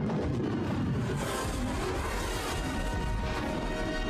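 Film sound effect of the Super Star Destroyer Executor crashing into the Death Star's surface and exploding, a long, dense crash with a deep rumble, mixed with orchestral score.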